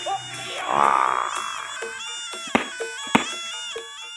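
Music with a simple melody of steady tones, punctuated by two sharp clacks about two and a half and three seconds in, the wooden jaw of a Javanese barongan lion mask being snapped shut. A short rough burst of noise comes about a second in.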